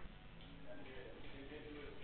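Faint background murmur of distant voices in a billiard hall, with no ball being struck.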